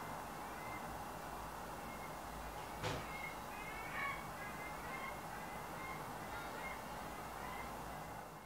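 Steady background hiss of room ambience with faint, scattered bird chirps, and a single click about three seconds in.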